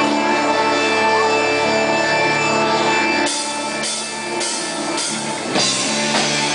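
Live rock band playing: electric guitars hold sustained chords, and the drum kit comes in about halfway through with regular hits roughly every half second.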